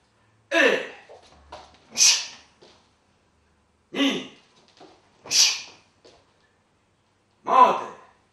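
Karate drill calls: a short shouted call, then about a second and a half later a sharp hissing exhalation as the yoko geri chudan (middle-level side kick) is delivered, repeated twice, with another shout near the end.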